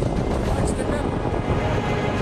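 Loud, steady rumbling noise picked up by a handheld phone microphone, with a man speaking over it. Faint background music comes in near the end.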